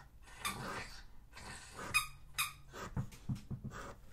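A dog working a new squeaky ball toy, its squeaker giving several short, faint squeaks.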